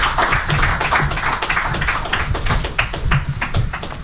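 A small seated audience applauding: a steady, dense patter of many hands clapping that dies away as the next speaker begins.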